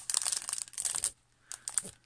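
Clear plastic film over a printed embroidery canvas crinkling as it is handled, for about a second, then a few short crackles near the end.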